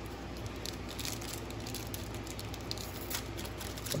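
Foil wrapper of a sports-card pack crinkling and crackling in the hands as it is worked open: a run of small, sharp crinkles, one a little louder about three seconds in.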